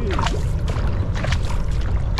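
Paddles of a two-person outrigger canoe catching and pulling through the water in repeated short splashes, with water washing along the hull. A steady low wind rumble on the microphone runs underneath.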